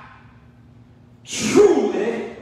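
A man's voice through the pulpit microphone: a pause, then one short breathy spoken utterance starting about a second and a half in.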